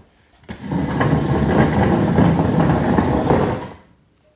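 Wooden stool dragged across a tiled floor, a rough scraping that lasts about three seconds and then stops.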